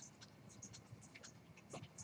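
Near silence with faint, irregular clicks of a computer keyboard and mouse.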